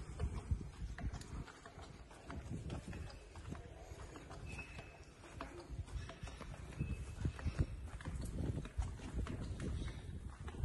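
Footsteps on stone paving: an uneven run of soft knocks from a walker's shoes.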